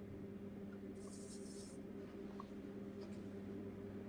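Faint steady low hum, with a brief high scratchy hiss about a second in.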